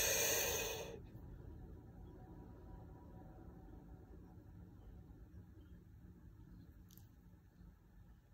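A man's deep chest breath drawn in through the mouth for about a second, then held: after it only faint room hum is heard.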